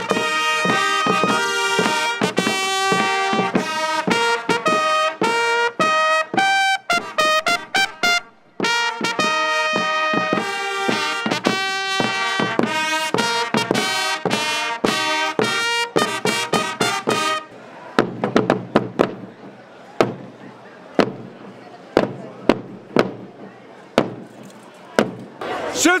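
Fanfare trumpets and Landsknecht rope drums playing a march-style fanfare, the trumpets sounding short clear notes over drum strokes, with a brief break about eight seconds in. About 17 seconds in the trumpets stop and only single drum strokes remain, roughly one a second.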